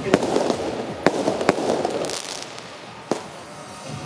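Firecrackers going off in single sharp bangs, four of them at irregular gaps, with two close together in the middle.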